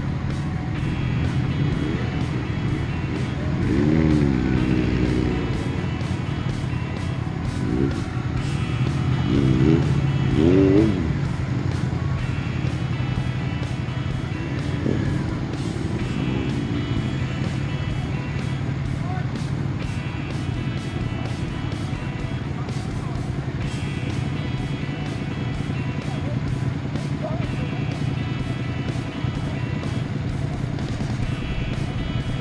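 A group of motorcycles running as they ride off one after another, with revs rising and falling. The loudest revving comes about four seconds in and twice more around ten seconds in. Music plays throughout.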